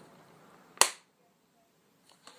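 A single sharp click about a second in, from the small hard card case being handled.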